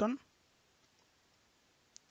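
Near silence, broken by a single short click just before the end, from work at a computer keyboard or mouse.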